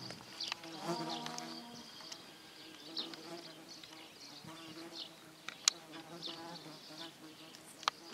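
Flying insects buzzing with a steady drone that wavers slightly in pitch, and a few sharp clicks, the loudest two near the end.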